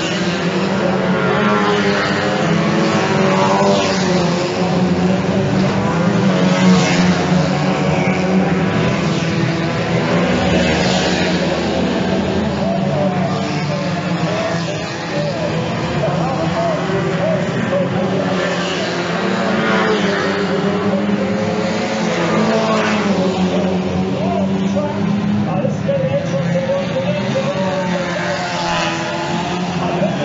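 Banger racing cars' engines running and revving together as a pack laps the track, with individual cars rising and falling in pitch as they pass close by every few seconds.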